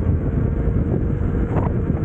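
Wind buffeting the microphone of a camera moving along with electric unicycle riders at speed, a loud, even rush with a faint steady tone underneath.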